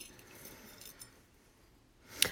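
Near silence: room tone with a few faint, light clicks in the first second.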